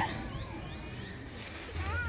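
Quiet outdoor background with three faint, short rising bird chirps in the first second.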